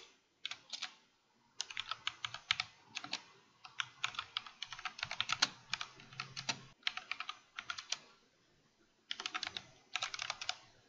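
Typing on a computer keyboard: quick runs of keystrokes in bursts with short breaks, then a pause of about a second before the typing starts again near the end.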